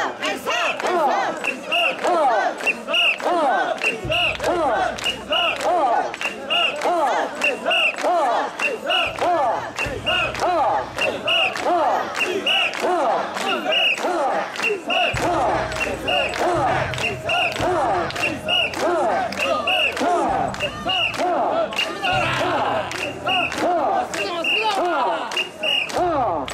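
Many men's voices shouting a rhythmic call together as they carry and bounce a Japanese portable shrine (mikoshi), the shouts overlapping without pause. Through it runs a high clinking about twice a second, in step with the shrine's swaying metal rings.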